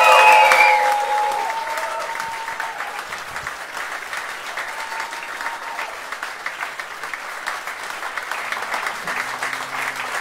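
A small audience clapping and cheering as a band is introduced. Shouts and whoops ring out loudest at the start, then the clapping settles into steady applause.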